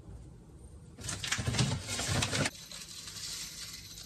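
Small mineral pon granules pouring and rattling into a plastic plant pot, a dense patter of small clicks for about a second and a half, then quieter settling.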